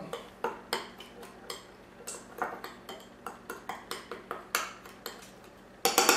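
A utensil clinking against a small glass bowl in quick, light taps, about three a second, as dry seasoning is stirred together, with a louder knock near the end.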